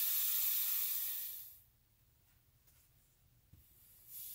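Pressurised gas hissing out of an oxy-acetylene torch tip as a torch valve is opened to bleed the regulators and hoses after the tank valves are shut. The hiss fades as the trapped pressure runs down and dies out about a second and a half in, leaving near silence.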